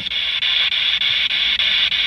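Handheld spirit box radio sweeping through stations, giving a steady hiss of radio static.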